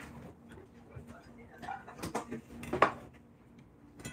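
A few light knocks and clinks of dishes and utensils on a kitchen counter, the loudest a little under three seconds in.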